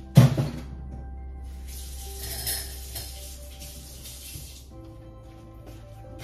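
A sharp knock just after the start, then a hiss of running water for about three seconds, over steady background music.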